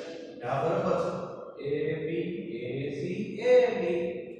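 A man's voice speaking slowly in drawn-out phrases with long held pitches, breaking off briefly about a quarter of a second and a second and a half in.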